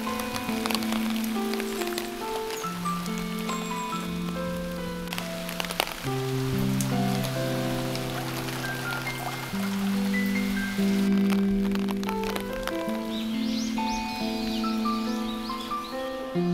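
Calm background music of slowly changing held notes, laid over the patter of rain and scattered drips.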